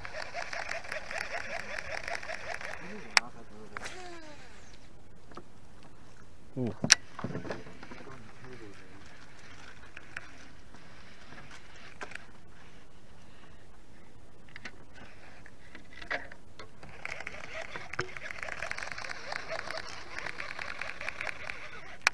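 Baitcasting reel being cranked, a fast whirring gear rattle, for about three seconds at the start and again through the last five seconds. In between come a few sharp clicks, the loudest about seven seconds in.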